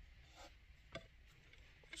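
Near silence, with two faint clicks of a plastic connector plug and wires being handled by hand.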